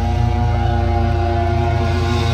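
Live rock band's amplified electric guitar and bass held on one chord and left ringing, a steady sustained chord over a heavy low drone with no drumbeat.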